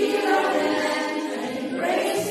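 A choir singing a hymn together, many voices in full, loud song that swells in right at the start.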